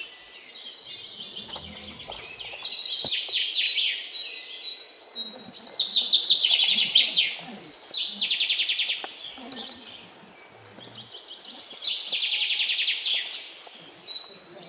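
Birds chirping in bouts of rapid, repeated high notes, with quieter gaps between bouts; the loudest bout comes about six seconds in.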